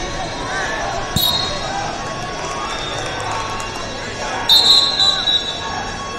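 Referee's whistle blasts over hall-wide crowd chatter at a wrestling tournament. A thump and a short whistle come about a second in, then a louder, longer whistle with a few pulses around four and a half seconds in.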